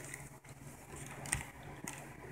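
Handling noise from a small cardboard gift box being lifted and turned by hand, with a couple of light taps in the second half.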